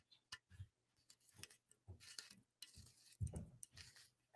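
Faint scattered clicks and a few soft knocks of a small glass bottle being handled as its stuck cap is worked at.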